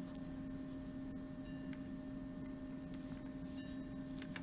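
Steady low electrical hum with a few faint, light ticks.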